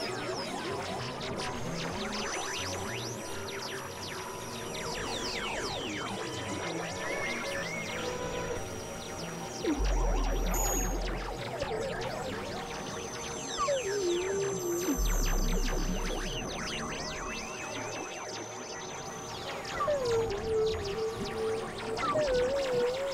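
Experimental electronic drone music from synthesizers (a Novation Supernova II and a Korg microKORG XL): many sweeping pitch glides over steady high tones, with two deep bass notes about halfway through and a warbling tone near the end.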